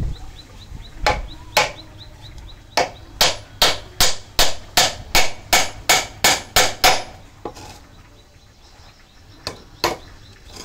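Hammer striking a chisel held against a block of wood, cutting into it by hand: two blows, then a steady run of about a dozen blows at two to three a second, a pause of a couple of seconds, and two more blows near the end.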